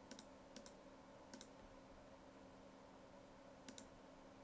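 Computer mouse button clicks: four short pairs of sharp clicks, three in the first second and a half and one near the end, over a faint steady hum.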